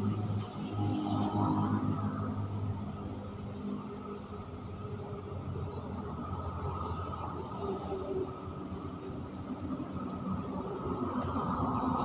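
Low rumble of a motor vehicle passing over the concrete road bridge overhead, with a steady engine hum that is loudest in the first two or three seconds and then eases off.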